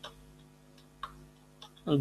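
Faint computer keyboard keys clicking, a few scattered keystrokes as a command is typed, over a low steady hum.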